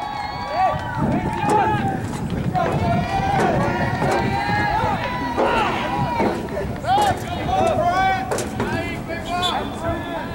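Several voices at a soccer game shouting and calling out over one another, high-pitched and with no clear words.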